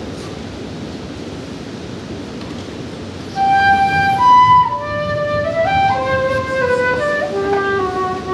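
Native American flute starting to play about three seconds in, a slow melody of held, clear notes stepping up and down, after a stretch of quiet room noise.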